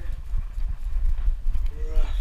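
Harness-mounted action camera jostling on a running dog: a steady low rumble of handling noise with irregular thumps from its footfalls. A brief voice sounds near the end.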